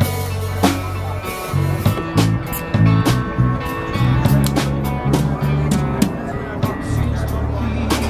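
A small live band playing a song: electric bass, acoustic guitar and drum kit, with a moving bass line under regular drum and cymbal hits.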